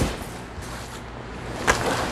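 Empty cardboard box being handled: a brief scrape of its flaps at the start, then a single sharp knock near the end.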